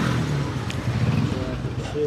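A motor vehicle's engine running close by on the street: a low, steady rumble that carries on from a rise in pitch just before.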